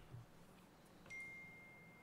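Faint phone notification chime about a second in, a short click followed by a single high tone held for about a second: the text message with the verification code arriving.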